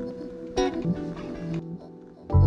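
Chops of a sampled recording played from the pads of an Ableton Push 3: pitched, plucked-string-like musical snippets, with a new chop starting sharply about half a second in.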